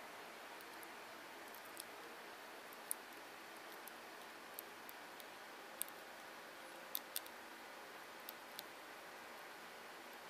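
Small plastic clicks and taps from a plastic action figure being handled while a sword piece is worked onto a peg on its back: about ten short, faint clicks at irregular intervals over a low steady hiss.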